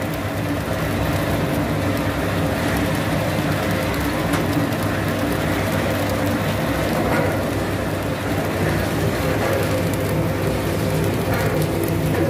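Puffed-rice roasting machine running steadily: a motor hum under a dense, even crackle of rice grains popping and tumbling in the heated roaster.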